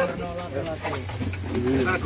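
Indistinct voices of passengers talking in an aircraft cabin while disembarking, over a steady low hum.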